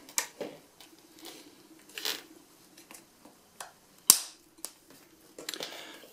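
Small metal hardware clicking and tapping as bolts are handled and pushed through an aluminium antenna panel and its mounting bar, in scattered light knocks and rustles. A sharp click about four seconds in is the loudest.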